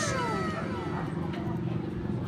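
A drawn-out animal call sliding down in pitch, fading out about half a second in, over a steady low hum.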